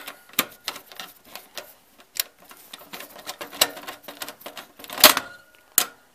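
Screwdriver working a screw against the steel expansion-slot bracket of a desktop PC case: a run of irregular metallic clicks and scrapes, the loudest about five seconds in. The screw is not catching because the card's bracket is not yet seated properly.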